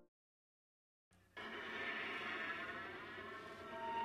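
About a second of dead silence, then a steady noise of the live venue's room and audience comes in abruptly, with a single faint instrument tone starting at the very end.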